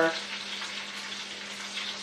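Breaded chicken breasts frying in oil in a skillet: a steady, even sizzle.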